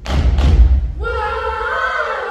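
A cappella group singing: two heavy thumps of the beat in the first half-second, then about a second in the voices come in on a sustained multi-part chord.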